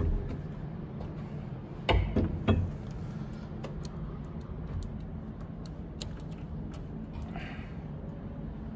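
Small sharp clicks and knocks of hands working the plastic wire connector and wiring of an LED ceiling light, loudest in a quick cluster of three about two seconds in, with scattered fainter ticks after. A steady low hum runs underneath.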